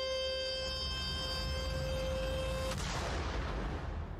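Trailer soundtrack: a long held musical note over a steady low rumble, cut off about two and a half seconds in by a sudden hit and a noisy wash that fades out.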